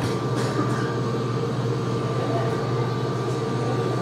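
Excavator's diesel engine running steadily, with a faint steady high tone above it, while the grab attachment is eased slowly into position.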